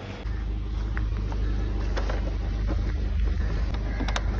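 Wind buffeting a phone microphone outdoors: a heavy, steady low rumble that jumps up about a quarter second in, with a few light clicks over it.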